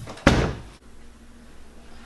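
A door being shut: one sharp thud about a quarter second in that dies away within half a second.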